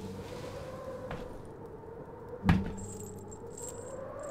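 A single knock about two and a half seconds in, then light metallic jingling in short repeated bursts from the buckles and metal fittings of a costume as its wearer moves, over a low steady hum.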